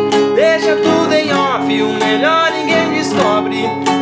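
Acoustic guitar strummed in a steady rhythm, switching between D minor and A minor chord shapes with a capo on the fourth fret. A man's voice sings over it.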